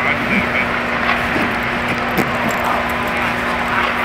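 Steady background drone with a constant hum, over which a roller bag's zipper is pulled and its fabric rustles as the bag is closed.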